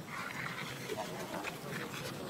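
Macaques vocalizing in short, soft squeaks and chirps, with a brief scratchy sound near the start.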